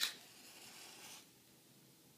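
A wooden match struck on its box: a quick scrape, then the faint hiss of the match head flaring for about a second before it stops abruptly.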